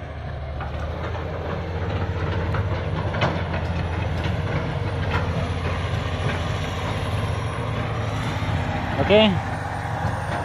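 Diesel engine of a hydraulic excavator running steadily, a low rumble with a fine, even pulse.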